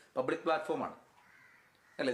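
A man speaking for about a second, then a pause in which only faint room tone remains.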